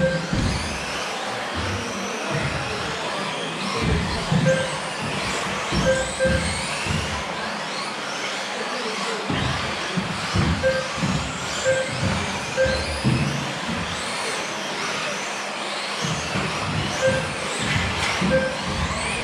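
Several electric 1/10th-scale RC off-road buggies racing, their motors whining up and down in pitch as they accelerate and brake. Short electronic beeps come at irregular intervals, a few seconds apart.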